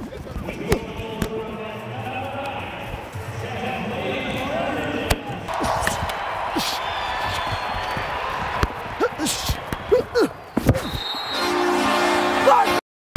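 Box lacrosse play heard close up on a player's body microphone: sharp knocks of sticks and ball, a few short squeaks, and the arena crowd getting louder about halfway through. A steady low tone begins near the end.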